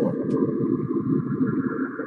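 Cassini spacecraft recording of Saturn's radio emissions (Saturn kilometric radiation) converted to audio and played back: a steady, fluttering wash of low warbling sound with a fainter band of higher tones above it.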